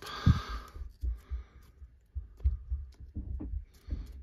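Handling noise as hands work a trading card in its opened plastic slab sleeve: a brief rustle at the start, then a run of irregular soft low thumps with small clicks of plastic.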